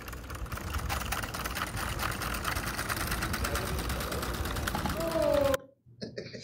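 Running legged robot with direct-drive motors, its mechanism and feet making a rapid, even clatter of ticks, with a brief whine near the end before the sound cuts off suddenly.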